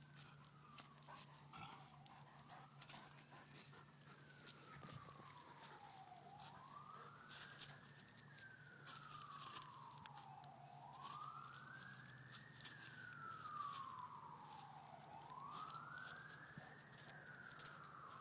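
A faint siren wailing, its pitch rising and falling slowly about every four to five seconds, with four high points. Soft scattered rustles and clicks sound under it.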